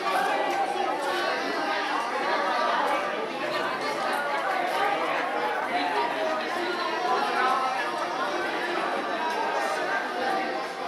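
Many people talking at once: an indistinct babble of overlapping voices.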